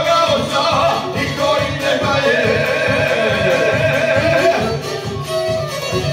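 Live folk band playing a song: a violin melody over plucked string accompaniment and a steady beat, with a man singing into a microphone.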